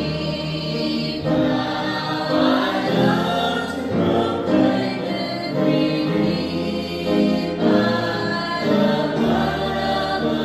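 Gospel hymn music: several voices sing sustained notes over a held instrumental accompaniment with a steady bass.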